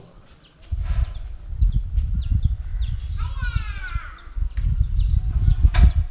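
Wind buffeting the microphone in uneven low rumbles, with birds chirping in short repeated calls. A longer falling call comes about three seconds in.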